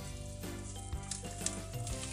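Hands squishing and crumbling fluffy, hydrated Gelli Baff gel granules in a plastic tub, with many small clicks.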